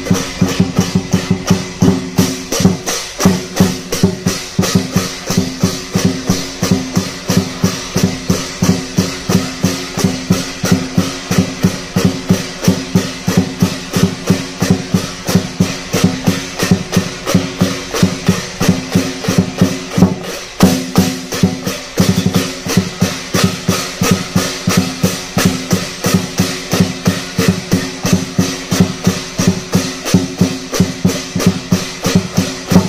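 Lion dance percussion: a large drum beating fast with clashing cymbals and a ringing gong, about three to four strokes a second. It pauses briefly about twenty seconds in, then carries on.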